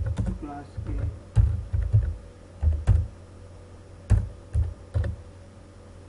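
Computer keyboard being typed on: short, irregular runs of keystrokes with brief pauses between them.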